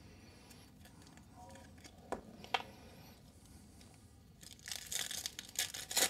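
A foil trading-card pack being torn open, its wrapper crinkling, through the last second and a half. Earlier there are only a couple of light clicks.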